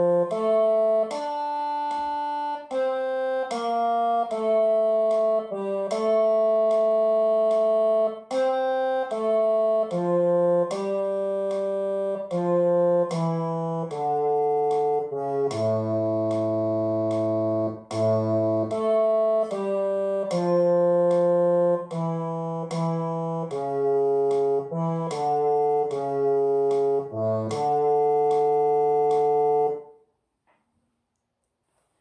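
A musical instrument plays a bass-clef sight-singing exercise in D minor, in 3/4 time, as a single melody line of steady held notes. It is the accompaniment to sing solfège along with. The lowest note, a long A, comes about halfway through, and the tune ends on a long final note.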